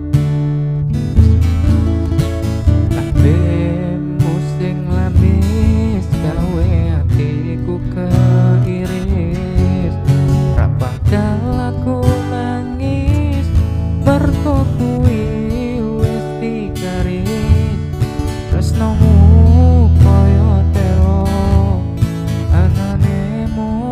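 Yamaha CPX600 acoustic guitar strummed in a steady rhythm, playing the chords of a pop song.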